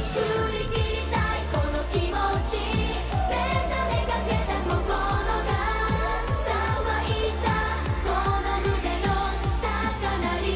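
Japanese girl idol group singing an up-tempo pop song live, voices over a backing track with a fast, steady kick-drum beat.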